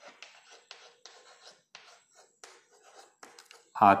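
Chalk writing on a chalkboard: a quick, irregular run of short scratches and taps as letters are written.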